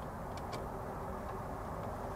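Light handling of a duplex receptacle and screwdriver at its terminal screws: a few faint clicks, two close together about half a second in and another near the middle, over a steady low background noise.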